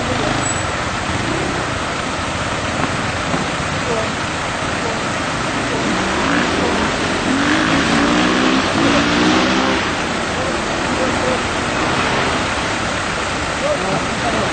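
Land Rover four-wheel drive running slowly through a rocky creek, its engine mixed with a steady rush of water around the wheels.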